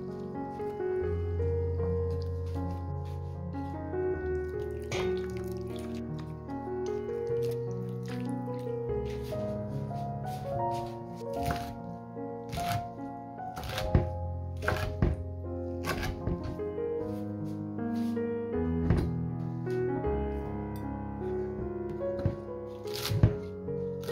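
Background music with a melody over a steady bass line. A kitchen knife chops greens on a wooden cutting board: sharp single strikes come irregularly from about five seconds in and grow louder and more frequent in the second half.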